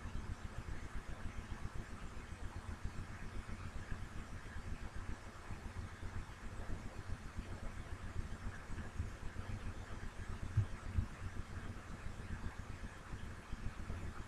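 Low, steady background rumble with no distinct events: open-microphone room noise.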